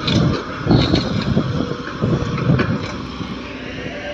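Komatsu PC130 hydraulic excavator working, its diesel engine running as the bucket tips a load of sand into a dump truck, the low sound surging unevenly in the first couple of seconds.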